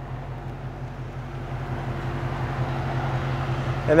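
A steady low mechanical hum, with a rush of noise that builds through the second half.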